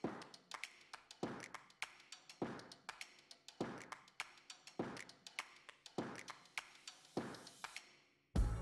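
Industrial sewing machine stitching slowly through fabric, a sharp click with each stitch at about one and a half to two a second, with lighter ticks between.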